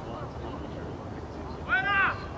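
A person's short, high-pitched shout near the end, rising and falling in pitch, over steady outdoor field noise.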